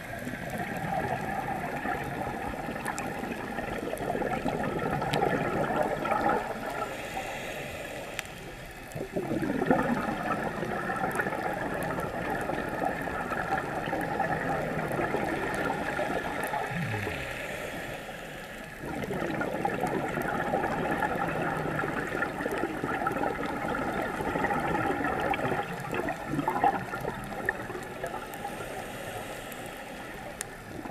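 A scuba diver's exhaled bubbles gurgling out of the regulator underwater in long bubbling stretches, with two short quieter pauses for inhaling, about eight and eighteen seconds in.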